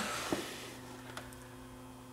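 Quiet workshop room tone with a steady low hum and two faint clicks, one early and one about a second in.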